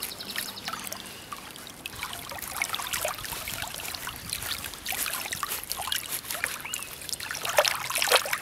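Shallow chalk-stream water trickling and splashing, with many small splashes, as a hand stirs a patch of water crowfoot in the current.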